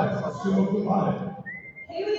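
Voices in the hall, then a brief high whistle from the audience near the end, rising quickly and holding its note for under half a second.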